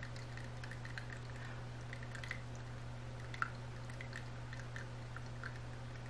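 Quiet room tone: a steady low electrical hum with a few faint, scattered soft ticks, one slightly louder about three and a half seconds in.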